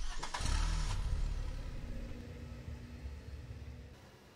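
Car engine started: a short burst of starter cranking as it catches, a brief rev, then the engine running and easing down toward idle over the next few seconds.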